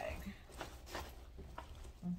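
Faint rustling and a few soft taps as a handbag is handled and set upright by hand.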